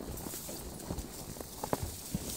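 Horses walking on a rocky mountain trail: hooves striking rock and dirt in uneven knocks and clops, a few sharper than the rest.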